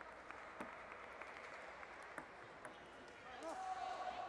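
Quiet sports-hall ambience with indistinct distant voices and scattered sharp light clicks of table tennis balls bouncing. Near the end comes a short pitched sound that bends in pitch and then holds steady.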